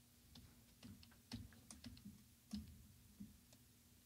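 Faint, irregular clicking of a computer keyboard, about a dozen soft taps spread over a few seconds, over a low steady hum.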